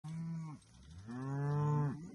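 Cattle mooing twice: a short moo, then a longer, louder one of about a second, each dropping in pitch at its end.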